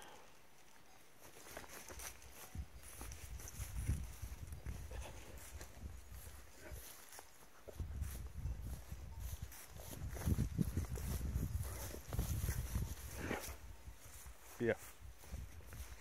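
Footsteps and rustling through grass, with uneven low rumble on the phone's microphone that grows stronger in the second half; a horse moves close by.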